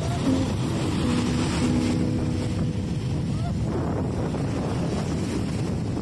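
Strong wind buffeting the microphone over the wash of breaking surf, a steady rumbling noise throughout.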